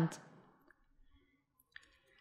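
Near silence after a spoken phrase trails off, broken by a few faint computer mouse clicks, the sharpest just before the end.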